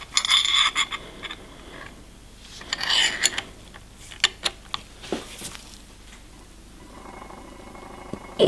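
A screwdriver straining at a seized steel slotted screw in a diesel injection pump's aluminium cover: short scrapes near the start and about three seconds in, then a few sharp clicks as the blade slips in the slot, with grunts of effort. The screw does not turn.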